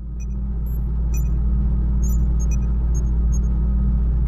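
A steady low droning rumble that swells in over the first second, with faint short high-pitched blips scattered over it, like an added electronic ambience effect.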